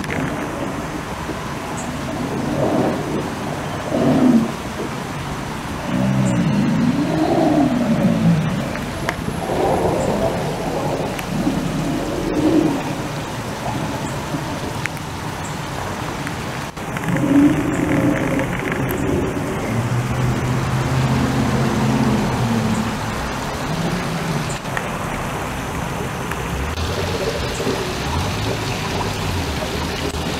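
Steady rush of water falling over rocks in a water feature, with low pitched moaning sounds rising and falling over it every few seconds.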